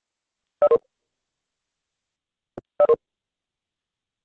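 A short electronic two-note beep, high then lower, sounding twice about two seconds apart, with a faint click just before the second.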